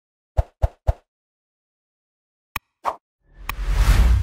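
Intro sound effects: three quick pops in a row, then a sharp click and another pop, then a swelling whoosh with a deep boom near the end.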